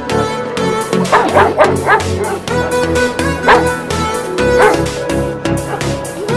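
A dog barking and yipping: a quick run of short barks a second or two in, then single barks about three and a half and four and a half seconds in, over background music with a steady beat.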